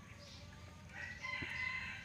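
A rooster crowing once, a single held call that starts about a second in.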